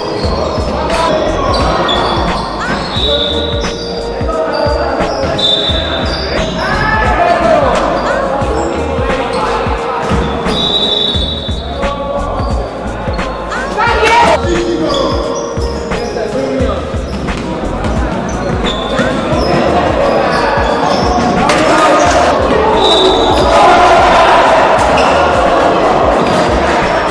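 Basketball game sounds in a reverberant gym: the ball bouncing on a wooden floor, short sneaker squeaks and players' voices.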